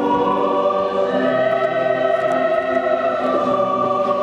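A choir singing a slow hymn in long, held chords that move to new notes about a second in and again near the end.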